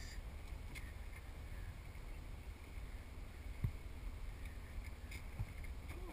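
Open-top Jeep Wrangler driving slowly over a dirt track: a steady, low engine and tyre rumble, with a single light knock from the vehicle a little past halfway.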